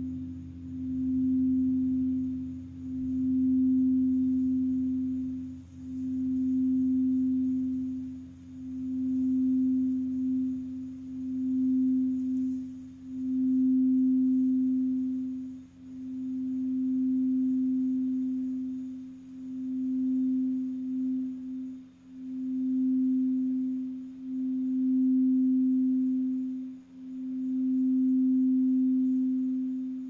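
Quartz crystal singing bowl being sung with a mallet: one sustained, nearly pure tone that swells and dips about every two to three seconds.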